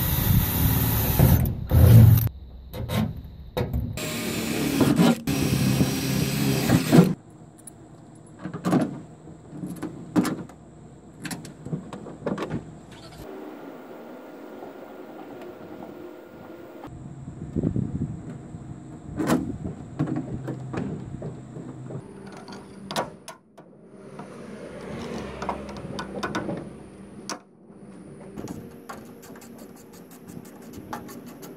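Cordless drill boring through a thin diamond-plate metal toolbox lid, in two loud runs in the first few seconds. After that come scattered clicks and knocks of hand work.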